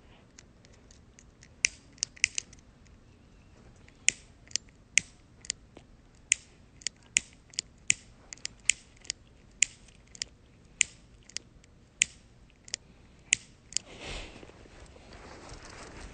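A cigarette lighter struck over and over, about two dozen sharp clicks at an uneven pace, failing to catch. Near the end there is a short breathy rush of noise.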